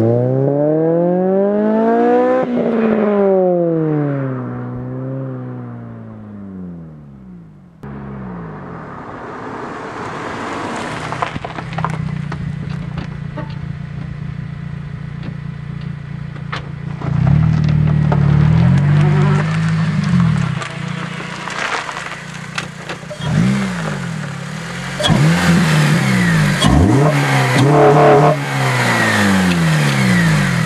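2008 Honda Civic Si's four-cylinder engine through a straight-piped axle-back exhaust and K&N short-ram intake. Its revs climb for about two seconds, then fall away and fade as the car pulls off. After a sudden cut about eight seconds in there is a rougher, steady exhaust drone, broken by several rev surges in the second half.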